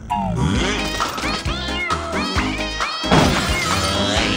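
Upbeat cartoon opening theme music with gliding vocal sounds over it and a sudden crash about three seconds in.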